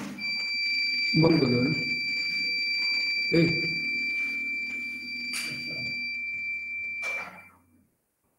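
A steady, high-pitched tone holds for about seven seconds and then cuts off, over muffled voices and room noise coming through the meeting audio.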